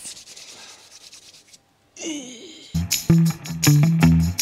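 Palms rubbed briskly together for about a second and a half, followed by a short groan. Then upbeat intro music with plucked guitar and a heavy bass beat starts in the second half and is the loudest sound.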